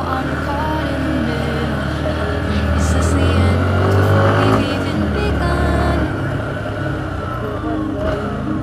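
Motorcycle engine running steadily at low road speed, heard from the rider's seat, with background music playing over it.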